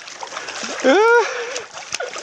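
A hooked golden rainbow trout (hōraimasu) thrashing and splashing at the surface of a shallow, fast-flowing stream, over the steady rush of the water. About a second in, a man gives a short voiced exclamation, rising then falling in pitch.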